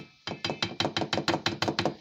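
Blue plastic strainer knocking rapidly against the rim of a stainless steel mixing bowl as drained canned mushrooms are shaken out of it: a quick, even run of about eight knocks a second lasting about a second and a half.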